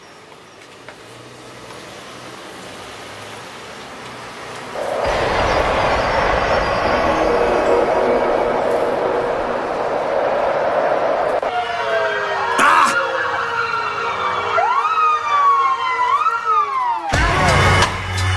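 Sirens wailing, several rising and falling glides overlapping, for about five seconds after a steady noisy rush that starts about five seconds in. A hip-hop beat with heavy bass cuts in just before the end.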